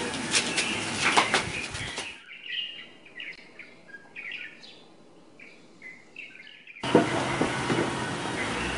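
Small birds chirping over and over, heard almost alone in a quiet stretch from about two seconds in until near the end. Before and after it, louder outdoor noise with a few sharp knocks; the louder noise cuts off and comes back abruptly.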